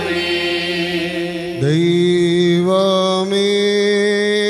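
Liturgical chanting: a man's voice sings through a microphone, coming in loudly about a second and a half in with a short upward slide and then holding long, steady notes, after a sustained held note before it.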